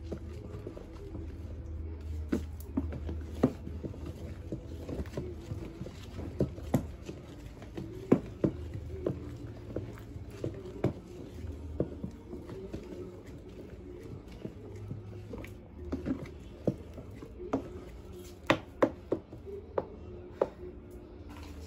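Wooden stirring stick knocking and scraping against the side of a plastic basin as a thick, foamy liquid-soap mixture is stirred hard: irregular sharp knocks, about one to two a second, over a steady low hum.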